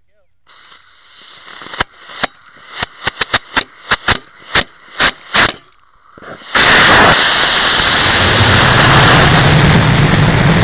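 Model rocket igniter sputtering: a rising hiss broken by a dozen or so sharp pops and cracks. About two-thirds of the way in, the Aerotech E15-7W White Lightning motor lights and its exhaust runs with a loud steady roar as the rocket lifts off.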